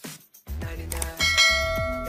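Intro jingle: music with a steady low beat starts about half a second in, and just over a second in a bright bell chime rings out and slowly fades over it.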